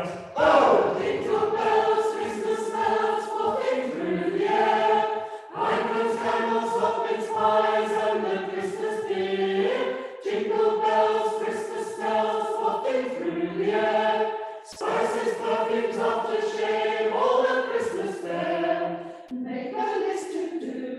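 Church choir singing a carol in sustained phrases of about four to five seconds, with brief pauses for breath between them, in a reverberant stone church.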